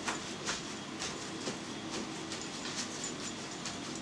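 Paper towels rustling and dabbing against a raw pork ham as it is blotted dry after soaking, in a series of short soft rustles about every half second.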